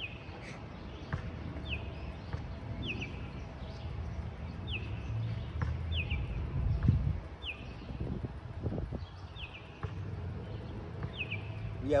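A songbird repeating a short, falling chirp over and over, about once a second, over a low outdoor rumble.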